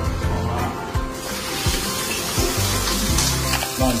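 Coated chicken cutlet sizzling in oil in a nonstick wok over low heat, a steady hiss that comes up about a second in. Background music plays underneath.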